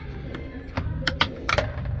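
A few sharp plastic clicks and clatters as a small pinion gear pops off the gripper shaft of a Brunswick GSX pinsetter and bounces away inside the machine. They come over a steady low hum.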